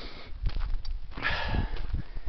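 A hiker breathing hard while walking uphill, with one loud breath about a second and a quarter in. Low thuds of footsteps on a dirt road sound underneath.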